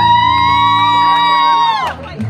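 Live band music: one long held high note over steady bass notes, the note falling off and the music dipping briefly just before the end.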